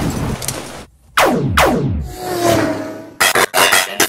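Sci-fi battle sound effects: a noisy blast first, then falling whooshes with a whine dropping in pitch, then a quick run of sharp impacts near the end.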